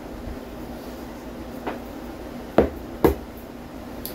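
A small bowl of kosher salt being emptied into a stainless stockpot and put down: a faint tap, then two sharp knocks about half a second apart, over a steady low room hum.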